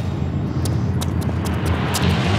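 A loud, deep, steady rumble with a handful of short sharp clicks over it.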